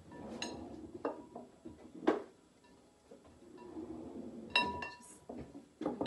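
Kitchen clatter: several sharp knocks and clinks of bowls and utensils, one with a short ring just after halfway, while dough is worked by hand in a mixing bowl.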